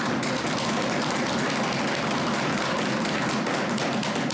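Many legislators thumping their wooden desks in approval: a dense, steady patter of knocks that starts abruptly and dies away right at the end.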